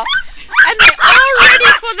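Pomeranians in a wire crate yapping in a quick run of sharp, high-pitched barks, with whines between them.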